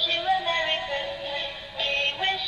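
A battery-powered snowman Christmas ornament playing an electronic Christmas tune through its small built-in speaker, a melody of held notes with a brief break near the end, switched on to show what it does.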